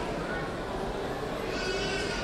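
Indistinct voices of people nearby, over a steady background noise.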